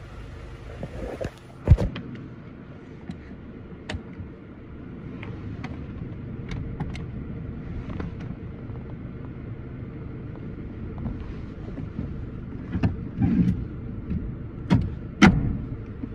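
Steady low hum inside a van's cabin, broken by scattered clicks and knocks: a sharp thump about two seconds in and a run of louder knocks near the end.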